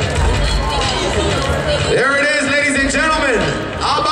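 Crowd hubbub over a thumping bass line of background music. From about halfway, one voice calls out in a long, drawn-out shout, and a second shout starts near the end.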